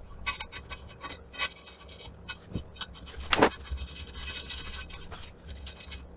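Small metal hardware being handled at a winch on a steel stand base: a run of irregular small clicks and scrapes, with the loudest click about three and a half seconds in.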